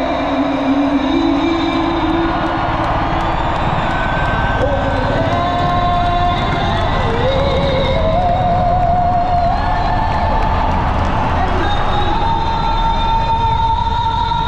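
A female singer holds the closing notes of the national anthem through the stadium speakers, ending on a long high note with vibrato. Under her voice there is a steady low rumble from military jets flying over the roof, and the crowd begins cheering.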